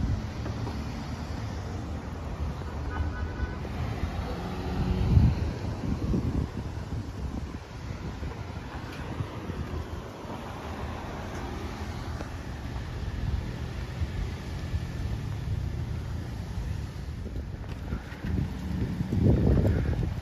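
Outdoor street noise: a steady low traffic rumble with wind buffeting the microphone, surging louder about five seconds in and again near the end.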